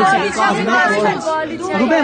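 A man speaking close to the microphone in a continuous stretch of talk, with no other sound standing out.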